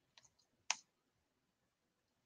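Computer keyboard keystrokes: a few light key clicks, then one sharper, louder key strike.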